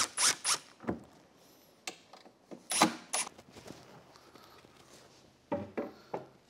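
A cordless Hitachi drill driver backing screws out of a plywood crate panel in short trigger bursts: several in the first second and two about three seconds in.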